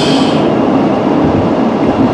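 Steady tyre and engine noise heard inside the cabin of a car being driven.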